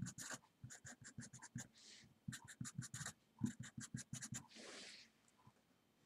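Felt-tip marker writing on paper, faint: many short quick strokes as symbols are written, with a longer drawn stroke about two seconds in and another near five seconds.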